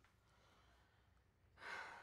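Near silence, then about one and a half seconds in a single audible breath, a short sigh that fades away.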